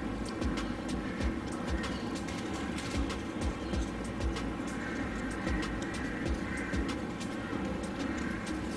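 Folded paper origami units rustling and clicking irregularly as they are handled and pushed onto a paper ring, over a steady background hum.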